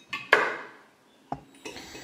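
A single sharp knock of a metal tool or part set down on the workbench, ringing briefly as it dies away. A small click follows about a second later.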